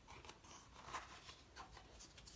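Faint crackles and rustling of a paperback picture book being handled and opened, its cover and pages moving.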